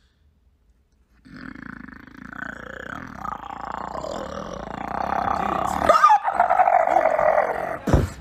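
A man making a long, rough growling sound with his voice close to the microphone. It starts about a second in, grows louder and breaks briefly about six seconds in.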